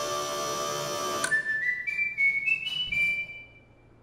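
A held note over a light hiss ends about a second in. Then comes a run of single high, pure, whistle-like notes, each held briefly and mostly climbing in pitch, which fades out near the end.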